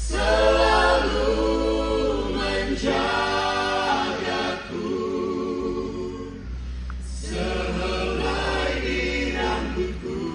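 A mixed group of men's and women's voices singing an Indonesian gospel song together through microphones and a PA, in phrases of held notes with short breaks about halfway through and again a couple of seconds later. Low held bass notes sound underneath.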